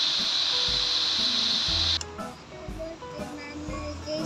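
Tapa frying in hot oil in a wok, a steady loud sizzle that cuts off suddenly about halfway through. Background music with a low beat plays throughout.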